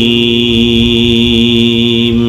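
A man chanting Quranic Arabic recitation in a melodic style, holding one long note that steps down slightly in pitch at the start. He is heard through a microphone and PA.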